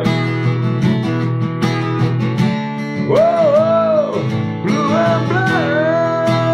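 Acoustic guitar with a capo strummed in steady chords. About halfway through a wordless sung line comes in over it, wavering up and down, and near the end it settles into one held note.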